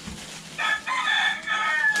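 A loud animal call with a clear pitch, starting about half a second in and lasting about a second and a half, with a short break near its beginning.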